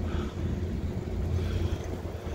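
Wind buffeting the microphone of a camera on a moving bicycle, an uneven low rumble.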